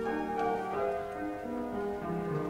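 A small mixed choir singing in parts, holding long notes that move together from one pitch to the next.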